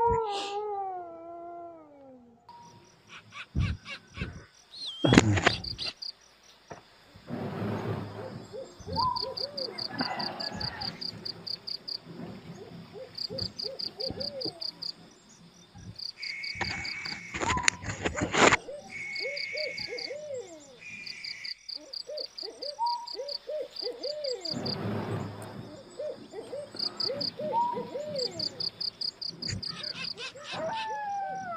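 Night insects chirping in fast pulsing trills, with runs of short repeated animal calls. Over them comes the rustle and flap of a blanket being shaken out and spread on a mattress, with a sharp thump about five seconds in.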